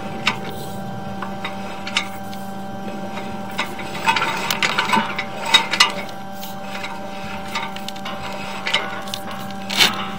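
Sewer inspection camera push cable being fed down a drain line: irregular clicks and knocks, with a cluster of rattling and scraping about four to six seconds in and a louder knock near the end, over a steady electrical hum.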